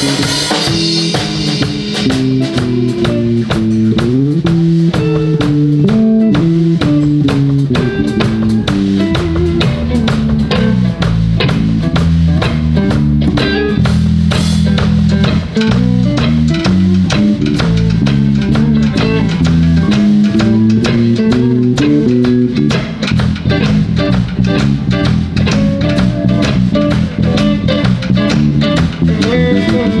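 Live blues band playing an instrumental: drum kit keeping a steady beat under electric bass and electric guitars.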